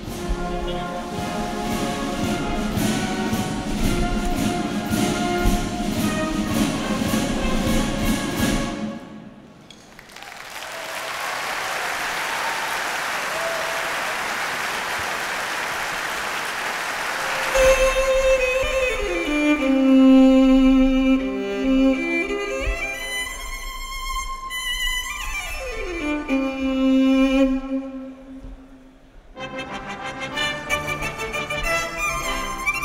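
Military brass band playing, breaking off about nine seconds in. Audience applause follows for several seconds. The band then starts again with a solo violin, with notes sliding downward twice.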